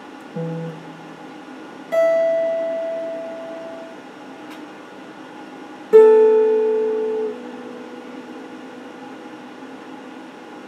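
Electric guitar picked slowly in sparse single notes: a short low note just after the start, a note at about two seconds left to ring and fade, and a louder note at about six seconds held for over a second, then damped.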